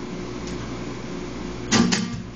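Acoustic guitar chord ringing on quietly between sung lines, then a fresh strum near the end.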